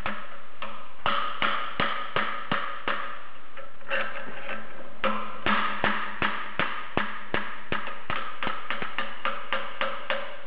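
Hammer repeatedly striking a steel pry bar wedged under the bearing collar of a Bridgeport mill's front variable-speed pulley, to force the collar and bearing off: sharp taps about two to three a second with short pauses, over a steady low hum.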